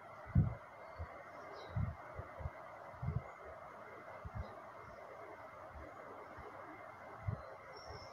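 Steady hiss of onions frying with mince and bitter gourd in a steel pot on a gas stove, with a few dull knocks as the spoon stirs the pot.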